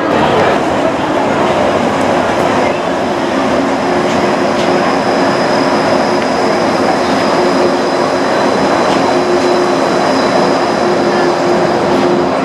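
Red Disneyland Mark VII monorail train passing close by on its elevated beam: a steady rushing noise with a held high whine and a lower hum from its electric drive.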